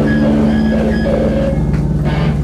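Loud, steady low drone from the band's guitar and bass amplifiers, a held note or amp hum ringing on as a rock song ends.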